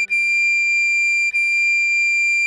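Soprano recorder holding a high D, re-tongued twice about a second apart, over a sustained E minor chord on keyboard.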